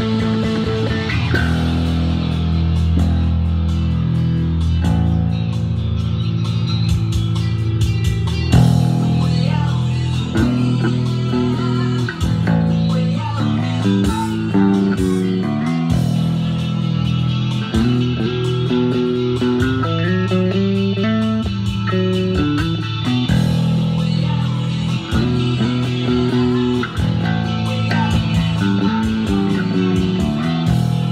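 Electric bass guitar played fingerstyle, its low notes moving busily, over a full rock band recording with electric guitar.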